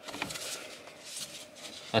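Faint handling noises, with a few light clicks and rubs, from gloved hands working the hose connection on a diesel fuel filter.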